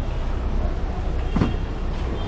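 Busy city street background: a steady low rumble of traffic with a short sliding sound about one and a half seconds in.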